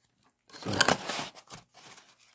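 Packaging crinkling and rustling as it is handled: a burst of about a second starting half a second in, then a few lighter rustles.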